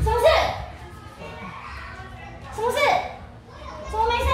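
Young children calling out in imitation of a horse, a playful '馬～' cry, after the music has stopped. There are two short high cries that rise in pitch, one just after the start and one about three seconds in.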